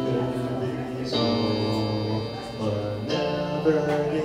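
Live solo song on an electronic keyboard: sustained chords that change about a second in and again near three seconds, with a young man's voice singing long held notes over them.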